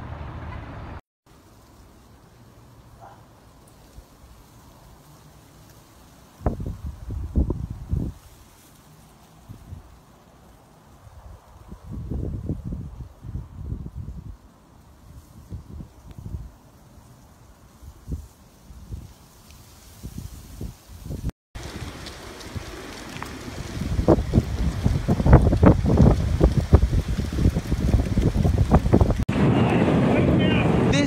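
Wind gusting over a phone microphone in irregular bursts, quiet between gusts at first, then near-continuous and louder in the last third, with a couple of abrupt breaks where the footage changes.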